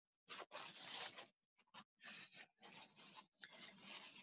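Faint paper towel rustling and rubbing over a sheet of paper in short, irregular strokes as shaving cream and paint are wiped off the marbled sheet.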